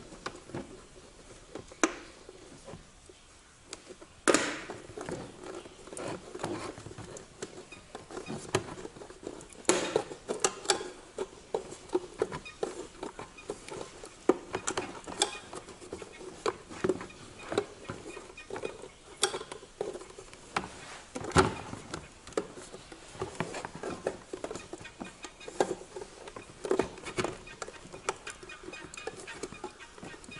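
Irregular plastic clicks, snaps and knocks as the glass element of an Audi Q7 exterior mirror is worked loose from its housing by hand and the plastic mirror parts are handled on a tool cart, with a few sharper knocks about 4, 10 and 21 seconds in.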